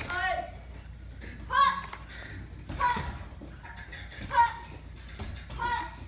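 Young students' short, sharp kiai shouts ('hut!') given with each kick, five of them about one and a half seconds apart.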